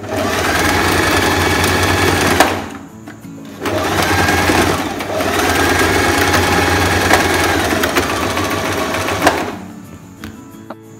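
Singer Tradition electric sewing machine stitching: the motor and needle run for about two and a half seconds, stop briefly, then run again for about six seconds, picking up speed as the second run starts. Partway through the second run the reverse lever is held to backstitch.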